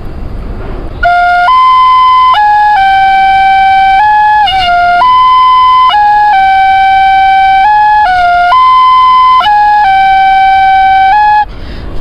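Bamboo flute playing a slow melody of long held notes, one short phrase played twice over. It starts about a second in and stops shortly before the end.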